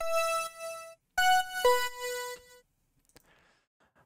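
Xfer Serum software synth chime patch, layered with a second oscillator an octave up for a bright top, playing three notes: one, a short pause, then two more in quick succession, the last lower and ringing out for about a second.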